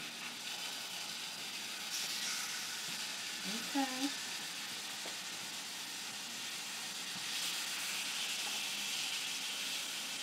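Steaks frying in a hot stainless steel pan, a steady sizzling hiss that grows louder about two seconds in and again over the last few seconds as the meat is turned with tongs.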